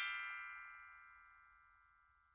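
Several high, bell-like chime tones ringing out together and fading steadily to near silence, the tail of a musical chime run.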